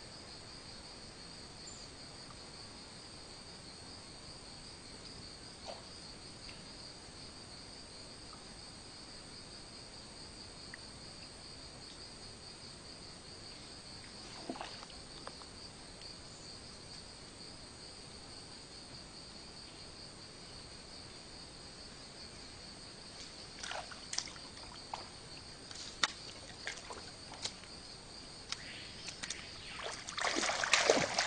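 Steady high-pitched insect chorus, one unbroken buzz. A scatter of faint knocks and clicks comes in the last several seconds.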